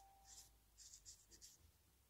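Pen writing on a dry bay leaf: a few faint, short scratching strokes.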